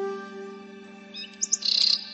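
A held flute note from background music fades away. About a second in, a bird gives a quick run of high chirps, ending in a short trill.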